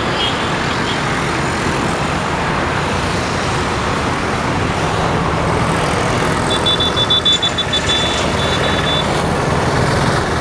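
Steady road traffic noise, a low engine hum under a wash of road noise, with a high electronic beeping in quick pulses from about six and a half to nine seconds in.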